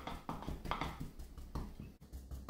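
Wooden pestle tamping mashed fried green plantain and pork down in a wooden pilón (mortar), a series of soft knocks about twice a second.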